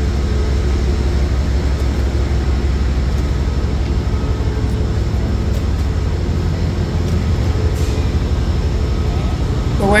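Steady low rumble with a few faint even hums over it.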